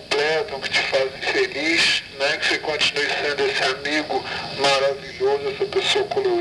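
Only speech: a voice speaking a recorded birthday message, with a thin, telephone-like sound.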